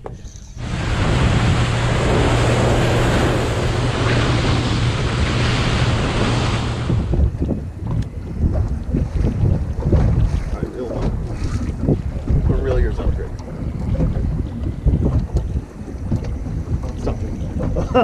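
A boat motor's steady low hum under a loud hiss of wind and rushing water, cutting off abruptly about seven seconds in. After that, gusting wind buffets the microphone.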